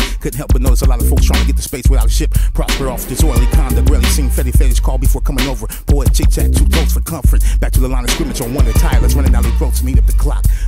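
Hip hop track with rapping over a heavy bass beat and sharp drum hits.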